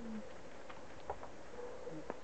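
A bird's short, low coo right at the start, followed by a faint click about a second in.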